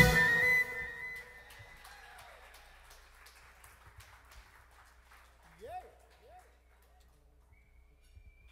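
A jazz band's final chord rings out after the closing drum hits and fades away over about two seconds. Faint scattered ticks and two short rising calls follow about six seconds in.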